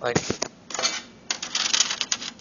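Scratching and clicking of a plastic laptop case being handled and shifted on a table, a run of small scrapes and knocks after a short spoken word.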